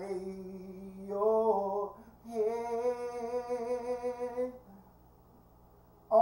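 A man's voice singing a cappella, holding two long wordless notes, the second beginning about two seconds in and ending near the close.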